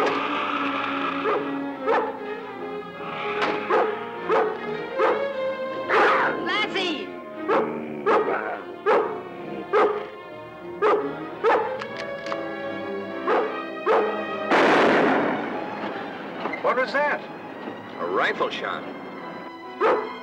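Rough collie barking over and over, about one bark a second, over background music. A longer, harsh snarl from a cougar cuts in about three-quarters of the way through.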